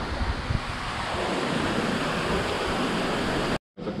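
Steady rush of water pouring from the spouts of a Venetian lion-head fountain and splashing into its basin, breaking off suddenly for a moment near the end.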